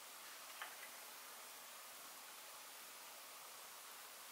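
Near silence: faint steady hiss of room tone, with a soft click about half a second in and a fainter one just after.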